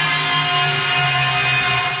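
A held, buzzing synthesizer tone from an electronic bass-music track, steady and without a beat.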